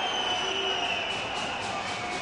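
Faint, even stadium ambience of a sparsely attended football ground, with a thin high tone held for about a second and a half.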